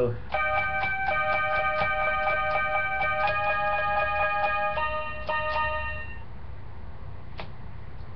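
Small electronic toy keyboard playing a rapid run of repeated two-note chords, about four strikes a second, with the chord changing twice. The playing stops about six seconds in, followed by a single click.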